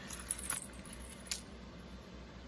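A small metal jingle bell attached to a paper craft card jingles briefly as the card is handled, with a few light clicks, one about half a second in and one just over a second in.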